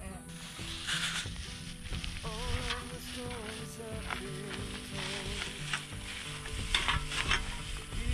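Background music, a melody over stepped bass notes, above a steady crackling hiss with a few brief crackles.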